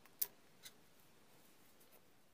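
A sharp click about a fifth of a second in and a fainter one about half a second later, then near silence.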